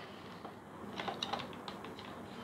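Small plastic tabletop tripod being handled as its legs are spread open, giving a few light clicks from about a second in.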